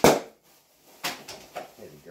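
A sharp knock as a cardboard product box is handled, then softer scraping and rustling of the box and packaging about a second later.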